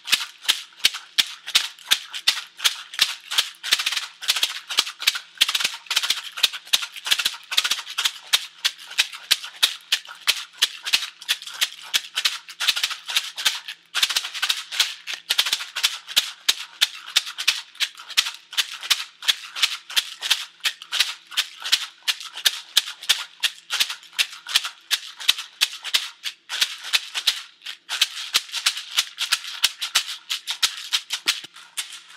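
Large round rawhide rattle shaken in a steady beat of about three to four strokes a second.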